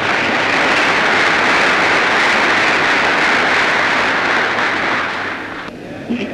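Large seated audience applauding loudly, the clapping dying away near the end.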